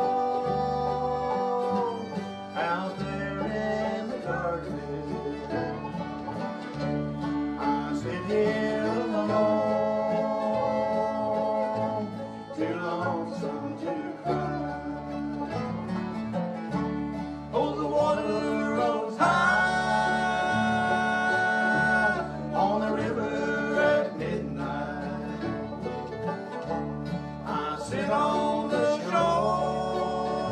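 Bluegrass band playing live: upright bass pulsing under acoustic guitars, mandolin, fiddle and banjo, mostly as an instrumental passage with no clear lyrics.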